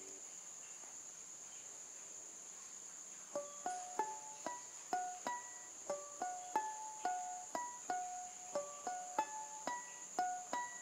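Banjo picked in single notes, a slow simple melody of about two notes a second starting about three seconds in, each note ringing briefly. A steady high-pitched tone runs underneath.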